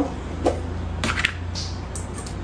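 Light handling sounds as a metal powdered-milk can is picked up and its plastic lid taken off: a soft knock, then a few clicks about a second in and a brief hiss. A steady low hum runs underneath.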